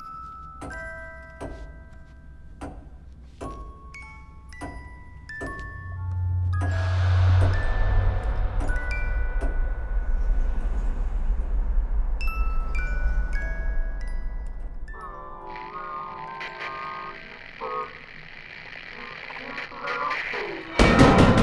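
Horror-trailer score: bell-like notes struck slowly, about one a second, each ringing out. About six seconds in a deep boom hits and a loud, dense swelling drone with high held tones takes over, easing off after about fourteen seconds. A buzzing sound follows for a few seconds near the end.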